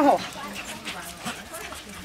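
A group of dachshunds milling about close by, making small dog noises.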